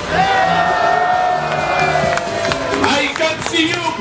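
Upbeat music played loud over a publicity-caravan float's loudspeakers, with one long held note through most of it. A man's voice shouts over the music near the end.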